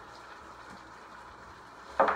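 Sliced beef sizzling steadily in a hot skillet, with a sudden knock right at the end.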